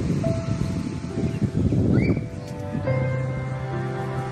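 Background music of long held notes, moving to a new chord about three seconds in. A rough rushing noise sits underneath for the first two seconds.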